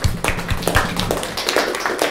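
Audience applauding loudly, a dense patter of claps with some single claps standing out about three to four times a second.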